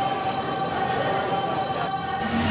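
A sustained drone of several steady, high, squealing tones held over a hiss, like a tension sound effect.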